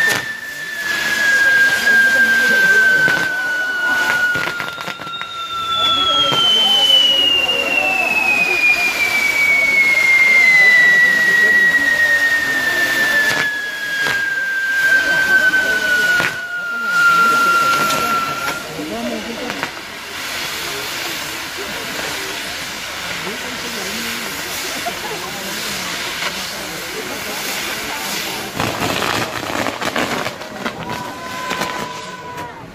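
Castillo fireworks burning: a steady hiss of spark fountains, with two long whistles that slowly fall in pitch, the first fading out about six seconds in and the second running from about five to eighteen seconds in, and a few sharp cracks. The hiss settles lower and steadier in the last third.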